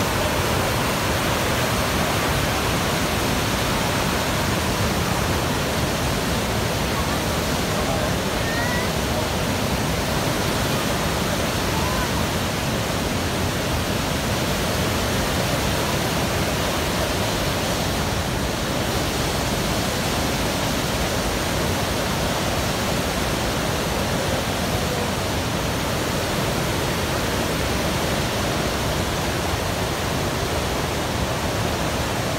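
Niagara River rapids: the loud, steady rush of whitewater over rocks, unchanging throughout.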